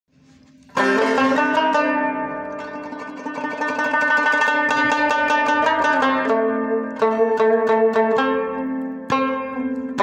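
A rubab being plucked: a first stroke about a second in, then notes that ring on at length, with fresh sharper plucks near the end.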